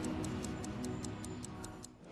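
A television programme's opening theme music: sustained tones under a fast ticking beat of about six ticks a second, fading out toward the end.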